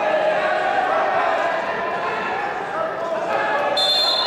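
Several people talking over one another in a large sports hall. A steady high tone starts suddenly near the end.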